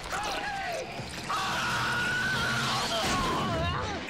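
Action-film soundtrack: a continuous crashing, rumbling noise with a man's shouts and one drawn-out yell over it.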